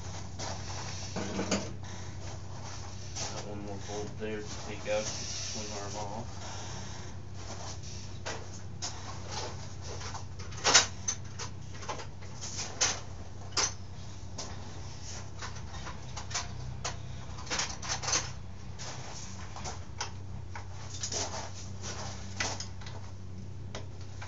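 Scattered metal clicks and clanks of hand tools and parts on a 1989 Yamaha YZ80 dirt bike being taken apart, the loudest about eleven seconds in, over a steady low hum.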